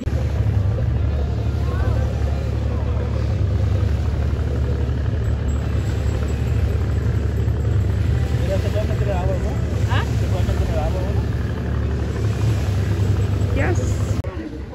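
Boat engine running steadily, a low even rumble throughout.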